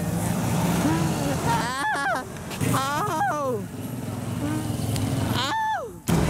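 Street traffic running steadily, cars and motorcycles passing. A person's voice calls out briefly three times.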